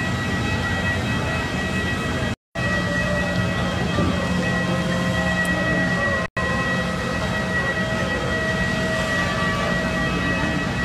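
Steady machine noise at an airport apron: a low drone under a high, steady whine, typical of aircraft turbines and ground equipment running. The sound cuts out briefly twice.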